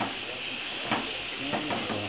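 Tomatoes, spinach and sliced hot dog and salami frying in olive oil in a small pan, with a steady sizzle, as a wooden spoon stirs them. There is one sharp click about a second in.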